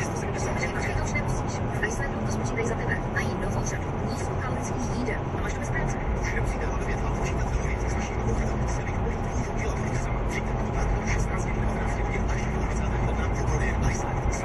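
Steady in-cabin road and engine noise of a car cruising at motorway speed, about 136 km/h, mostly a low even rumble. Faint talk runs underneath.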